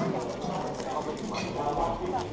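Rapid plastic clicking and clacking of a 6x6 speedcube's layers being turned by hand during a fast solve, over voices talking in the background.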